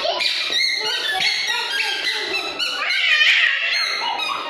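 Toddlers babbling and squealing in high-pitched voices, not forming words.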